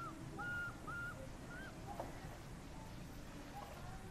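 A few short whistle-like animal calls: a rising call at the start, then three brief notes in quick succession within the first two seconds, over a steady outdoor background.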